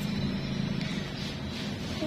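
A steady low mechanical hum, like a motor or engine running, with no distinct clicks or snips.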